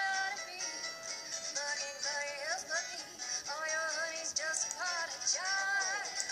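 A children's cartoon song about honey bees playing through a laptop's small speakers: a sung melody over music, thin, with little bass.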